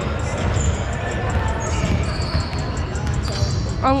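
Balls bouncing on a hardwood gym floor amid the steady din and chatter of players in a large, echoing sports hall.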